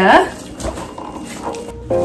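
A woman's voice ends a word on a rising pitch at the start, followed by a quieter stretch. Background music with steady held notes comes in near the end.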